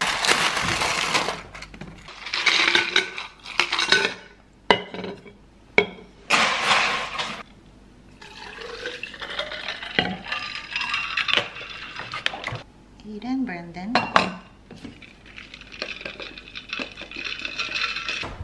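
Ice cubes scooped from a freezer ice bin and dropped into insulated stainless-steel water bottles, clattering in three loud bursts. About eight seconds in, water is poured from a plastic bottle into the steel bottles.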